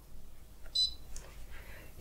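A Tefal Easy Fry air fryer's touch control panel gives one short, high beep a little under a second in. The beep acknowledges a button press while a cooking program is being chosen.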